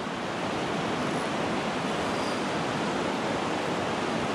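Fast-flowing river rapids rushing steadily.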